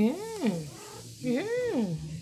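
Domestic cat meowing twice, each meow rising and then falling in pitch.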